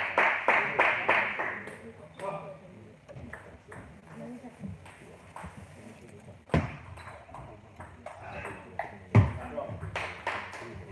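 Table tennis ball clicking off bats and table during a rally, with sharp hits about six and a half and nine seconds in, the second the loudest. At the start, voices and rhythmic clapping at about three claps a second fade out over the first second or two.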